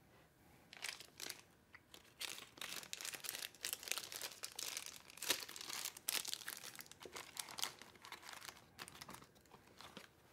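Faint, irregular crinkling and rustling of packaging being handled, with short sharper crackles, thinning out in the second half.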